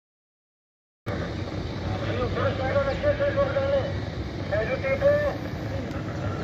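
Silence for about a second, then a steady low rumble of vehicle engines with men's voices talking over it.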